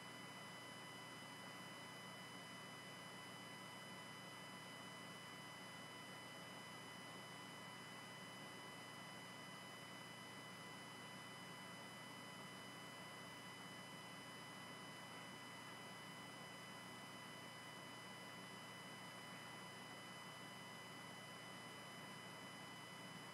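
Near silence: a steady faint hiss with thin, steady high electronic tones.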